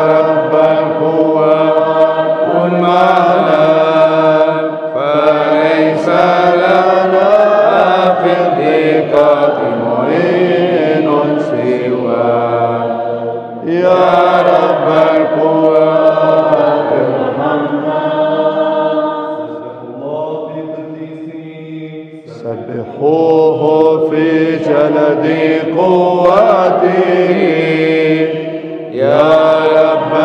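Byzantine liturgical chant sung in Arabic by men's voices: a melodic line in long phrases over a steady held low note, with short breaks between phrases about 13 seconds in, again around 20 to 22 seconds, and just before the end.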